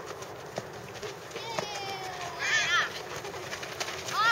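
Children's high-pitched voices calling out across a playing field over faint outdoor background, with the loudest call a little past halfway.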